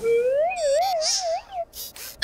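Cartoon sound effect: a wavering electronic tone that rises at first, then wobbles up and down about five times a second for about a second and a half. It ends in a few quick high chirps.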